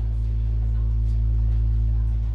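Live synthesizer music: a loud, sustained low drone with a few steady higher tones held above it, unchanging through the moment.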